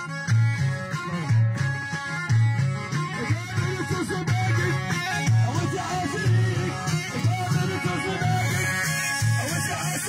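Sahrawi traditional music: a plucked string instrument plays over a deep, steadily repeating beat, with voices singing from about three seconds in.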